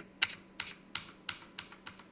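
Computer keyboard keys tapped in a quick, irregular series of light clicks, about four a second.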